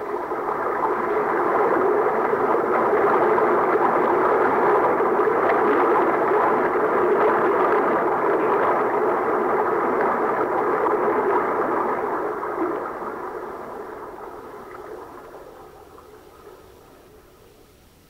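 Radio-drama sound effect of a steady rushing roar, the noise the characters call the beginning of the Bolivar Waterway, with the new channel opening after the blast. It swells in over the first couple of seconds, holds, then fades away over the last five or six seconds.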